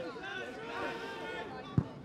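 Players and spectators calling out over general chatter beside a football pitch, with one sharp, loud thud of a football being kicked near the end.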